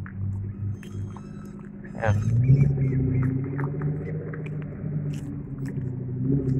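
Sports car engine running with a steady low pitch, coming in louder and rising slightly about two seconds in, then holding steady.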